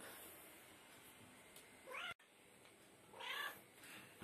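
A cat meowing twice. The first is a short, rising meow about two seconds in that breaks off suddenly. The second, slightly louder meow comes a little after three seconds.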